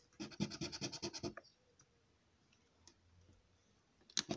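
A coin scraping the scratch-off coating of a paper scratchcard in a quick run of short strokes for about the first second, then stopping.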